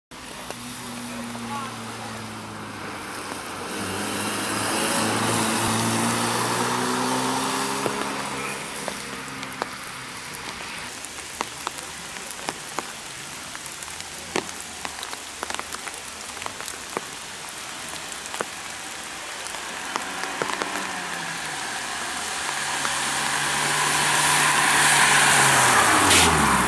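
Fiat Punto competition car's engine revving up and down through gear changes, then fading for a quieter stretch with scattered sharp ticks. Near the end it comes back, louder as the car approaches and passes close by, with tyre hiss on the wet tarmac and the engine pitch dropping as it goes past.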